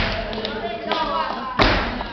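Two heavy flamenco footwork stamps on the stage floor, about a second and a half apart, with a few lighter taps and voices calling out between them.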